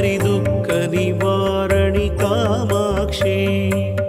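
Female voices singing a Sanskrit Devi stotram in an ornamented, Carnatic-style devotional melody, over a steady held drone and instrumental accompaniment.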